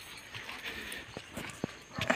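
Footsteps on a dry dirt trail: a few separate soft steps over a faint outdoor hush.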